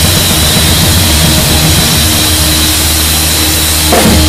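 Live rock band playing loudly, picked up on a camera right beside the drum kit. A harsh, continuous wash of hi-hats and cymbals dominates over a steady low bass.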